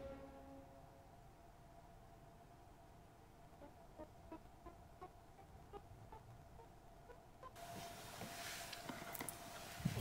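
Pipe organ's soft viola da gamba swell stop sounding very faintly. A note is released right at the start and dies away, leaving a faint steady tone. A quick series of short, faint staccato notes follows a few seconds in, and rustling handling noise rises near the end.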